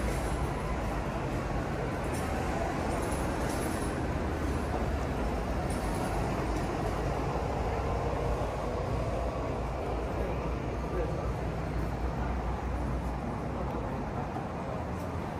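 Steady city street ambience: road traffic running with a low rumble, mixed with indistinct voices of people nearby.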